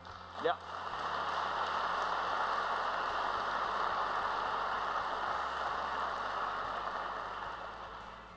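Audience applause: it builds about a second in, holds steady for several seconds, then fades out near the end.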